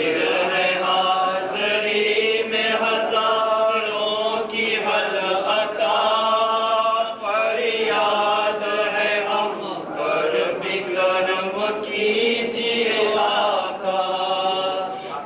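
A crowd of men chanting together in unison, a Muharram mourning lament (noha), the melody moving in repeated phrases a second or two long.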